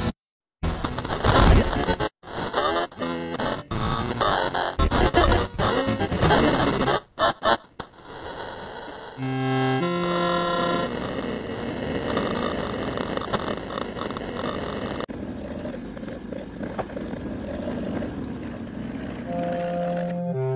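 Cartoon soundtrack mangled by editing effects into a harsh cacophony: for the first several seconds it stutters and cuts in and out in chopped fragments, then a few stepped synthetic tones sound about nine seconds in, followed by a steady distorted noisy din, with more stepped tones near the end.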